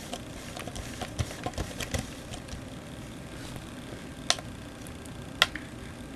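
Hands handling a plastic water bottle: a run of small plastic clicks and crackles, then two sharper clicks about a second apart near the end.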